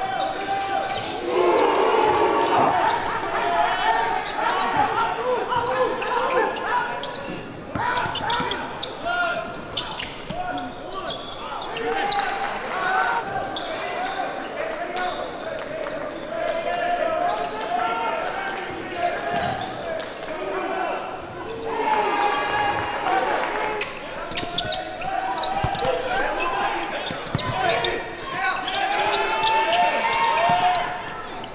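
Basketball game sound in a large gym: many overlapping crowd and player voices calling out, with a basketball bouncing on the hardwood floor at times.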